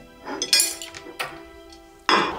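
Soft background music of held tones, with tableware clinking twice as dishes are set down on a dining table: once about half a second in and again a little after one second.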